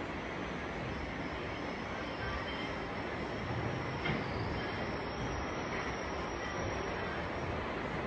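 Steady background noise with a faint high whine running through it.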